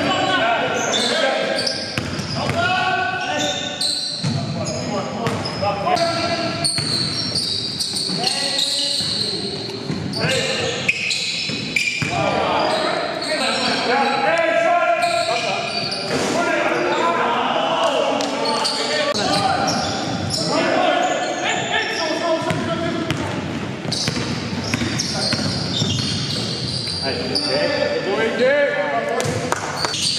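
Basketball game in a gym: a ball repeatedly dribbled and bouncing on the hardwood floor, mixed with players' indistinct shouts and calls, all echoing in the large hall.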